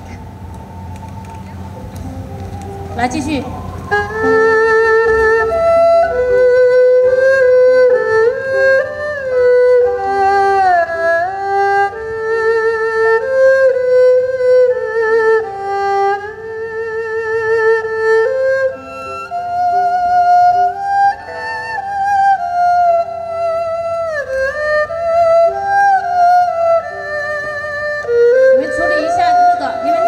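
Amplified erhu playing a slow melody with sliding notes and vibrato over steadier accompanying notes from the rest of the band, heard through the PA during a front-of-house soundcheck. The music comes in about four seconds in, after a low hum.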